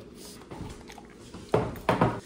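A drinking glass and a large glass jar set down on a wooden tabletop: two sharp knocks about a third of a second apart near the end, after a faint stretch.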